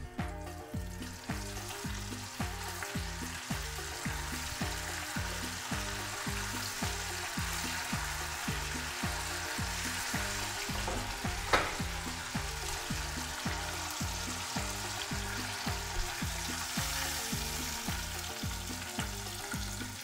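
Floured strips of cazón (dogfish) frying in a pan of hot safflower oil: a steady sizzle. A single sharp knock comes about halfway through, and background music with a steady bass beat plays underneath.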